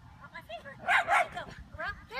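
Miniature schnauzer yipping and barking in a quick string of short, high yelps, with the two loudest barks about a second in.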